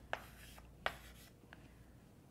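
Light writing sounds from a pen on the writing surface: two short taps, a fainter third about a second and a half in, and faint rubbing between.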